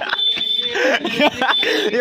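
Men's voices talking on the street, with a short steady high-pitched tone near the start, lasting under a second.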